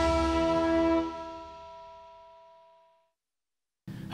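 The last chord of a TV news programme's theme music, held and then fading out over about two seconds into silence.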